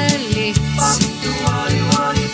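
Recorded pop band music: a steady drum beat with cymbal crashes under bass, guitars and keyboard, with a lead melody line gliding in pitch.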